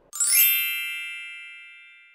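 A bright chime sound effect: a quick downward shimmer that settles into several high ringing tones, fading out over about two seconds.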